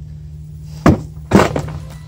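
Two knocks about half a second apart, the second heavier and longer, as the greasy trailer wheel hub, just pulled off the axle, is set down.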